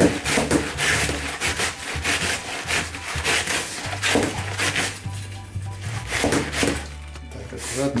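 White cabbage being shredded on a wooden multi-blade cabbage shredder board: a rhythmic scraping swish each time the cabbage is pushed across the blades, about two or three strokes a second at first, then slower.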